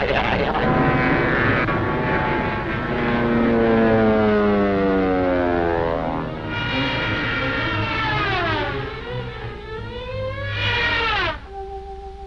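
Cartoon soundtrack music and sound effects: a long falling glide in pitch over the first six seconds, then a second falling swoop, and a short steep one that cuts off sharply about a second before the end, leaving a faint held note.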